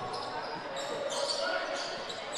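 Quiet, echoing sound of live basketball play in a gym: a ball dribbling on the hardwood floor under low background voices.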